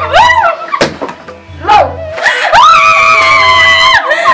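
A young woman's shrill wailing cries that slide up and down in pitch, ending in one long held wail, over background music with a steady drone and a low pulse.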